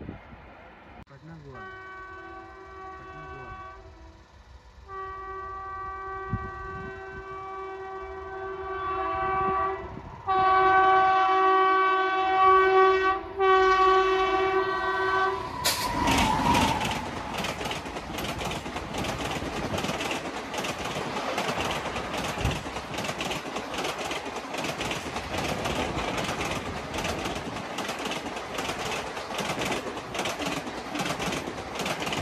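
WAP-7 electric locomotive sounding its air horn in four long blasts as it approaches at speed, each louder than the last. The locomotive passes about halfway through with a sudden rush of noise, and the passenger coaches follow with a steady, rapid clickety-clack of wheels over the rail joints.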